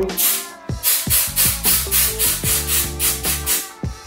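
Aerosol can of Gun Scrubber solvent spraying in rapid short hissing bursts, about four a second, soaking a shotgun's gas piston to loosen carbon.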